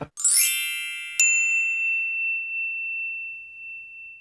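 Short chime sting closing the video: a quick cascade of bell-like tones, then a single bright ding about a second in that rings on and fades slowly.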